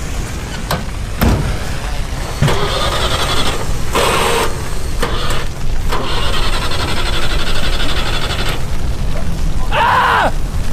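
A car door shutting about a second in, then a ZAZ Zaporozhets being started: several bursts of starter cranking and engine noise, the longest from about six to eight and a half seconds, over a steady low rumble.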